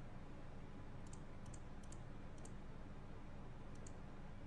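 Faint steady hum and hiss of room tone, with a handful of faint, high ticks scattered through.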